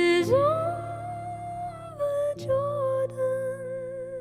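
Female voice singing long wordless notes, sliding up into the first, over sustained piano chords struck twice, about two and a half seconds apart.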